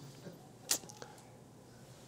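A quiet pause: faint room tone with one short click about two-thirds of a second in.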